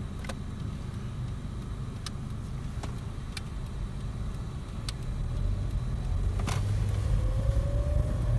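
Toyota car driving, heard from inside the cabin: a low engine and road rumble. About five seconds in it grows louder as the car speeds up, with a faint engine tone rising in pitch, and a few faint clicks scattered throughout.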